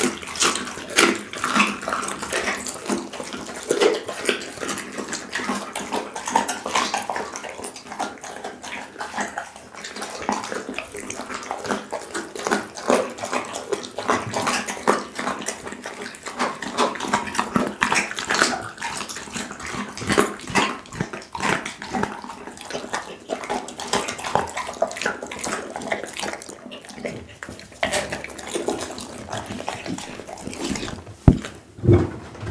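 A pit bull chewing raw meat on the bone close to a microphone: wet smacking and a dense, irregular run of sharp crunches and crackles.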